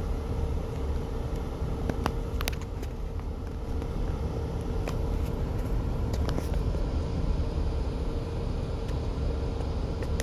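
Low rumble of a car's engine and tyres heard from inside its cabin as it drives along, with a steady hum and a few light clicks.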